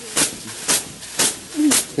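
Bath brooms (veniks) swishing through the hot air of a steam bath in an even rhythm, about two strokes a second, with a short groan from one of the bathers near the end.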